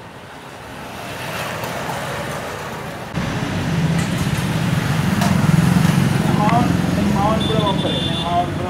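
Street traffic noise: a motor vehicle's engine running nearby, growing louder and then jumping louder about three seconds in. A person's voice comes in near the end.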